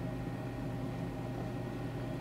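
Steady low hum with an even faint hiss: background room noise, with no distinct event.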